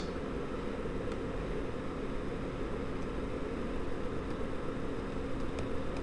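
Steady background room noise: a low, even hum and hiss with a faint steady tone running through it, and no other event.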